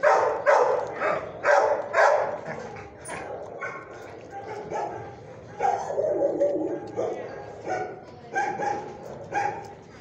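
Dog barking: a quick run of about five loud barks, roughly two a second, in the first two seconds, then quieter, more scattered barks and yips through the rest.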